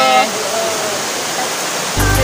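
Steady rushing of flowing water, an even noise that holds without change.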